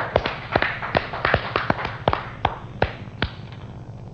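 Sparse handclaps from a few people, irregular and thinning out, stopping a little after three seconds in.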